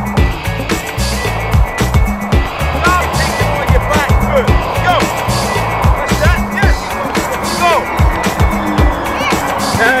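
Music with a steady bass beat, over many short rising-and-falling squeaks and dull thuds from players training.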